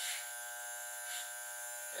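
Electric hair clippers buzzing steadily as they cut straight wig hair at the ends. There is a brief, brighter rasp near the start and another about a second in as the blades bite through the hair.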